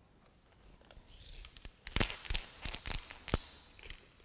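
Salt being shaken from a clear plastic tube onto wet watercolour paper: a soft hiss of sprinkling grains, then a series of sharp rattling shakes, the loudest about two and three seconds in.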